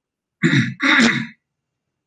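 A man clearing his throat in two short rasps, about half a second and one second in.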